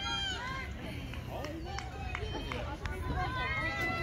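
Onlookers' voices outdoors at a track meet: unclear talking and high-pitched calls, strongest at the start and again near the end, over a steady low rumble.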